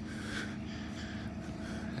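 Quiet, steady background noise with a faint low hum and no distinct events.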